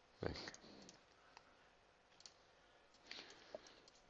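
A few faint computer mouse clicks, spaced about a second apart, with a small cluster near the end.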